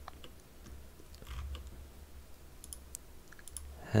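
Scattered faint clicks of a computer mouse and keyboard, over a low steady hum.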